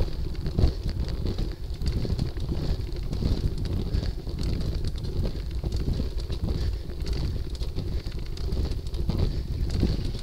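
Bicycle climbing slowly over rough cobbles: an uneven, rattling rumble from the tyres and bike-mounted camera, mixed with wind on the microphone.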